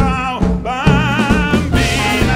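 Live band with horns, percussion and drums playing an upbeat swing-tinged number, a lead line holding wavering, vibrato notes over a steady beat.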